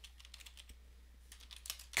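Typing on a computer keyboard: a quick run of faint keystrokes over a low steady hum.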